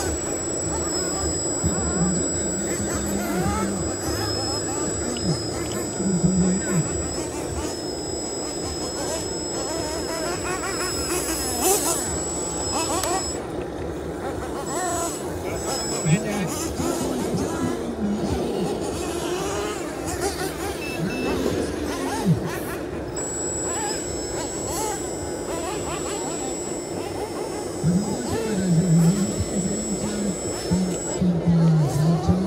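Voices and background music, with a thin steady high whine that drops out for several seconds in the middle. Someone shouts and laughs near the end.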